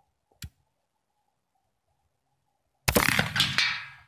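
Black-powder flintlock rifle firing a single shot about three seconds in: a sudden sharp report that trails off over about a second.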